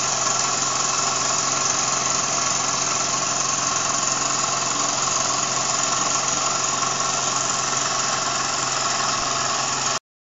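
Wilesco D10 toy steam engine running steadily under steam pressure, its piston turning the flywheel and a small dynamo, making a continuous, even hissing whir.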